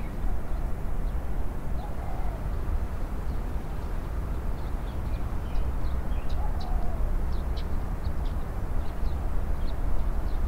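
Outdoor park ambience: a steady low rumble with faint, short, high bird chirps scattered mostly through the second half.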